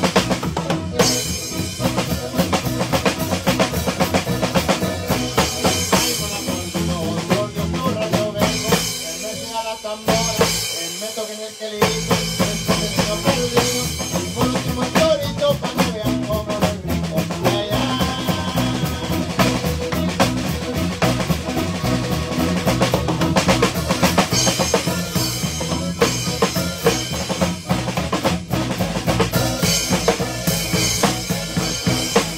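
Live norteño band playing an instrumental zapateado, driven by a drum kit with bass drum and snare. Around ten seconds in, the drums and bass drop out briefly before the full band comes back in.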